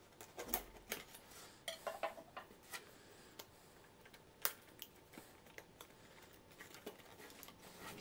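A table knife slitting the seal of a small cardboard box, with light scrapes and clicks, followed by fingers handling the cardboard; one sharper click about four and a half seconds in.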